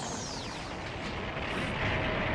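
Anime energy-blast sound effect: a dense, continuous rumble, with a whoosh falling in pitch over the first half-second.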